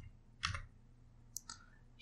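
Three faint, separate clicks of a computer keyboard being typed on.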